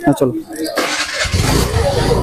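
A motor vehicle's engine starts about a second in and then runs steadily, with a low even drone. A man's voice is heard briefly before it.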